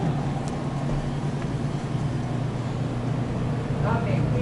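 Steady low hum of a grocery store's refrigerated produce display cases, with even background store noise.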